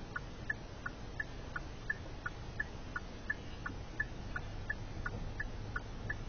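Automated phone line's waiting tone: short, quiet beeps repeating about three times a second, over a low steady hum.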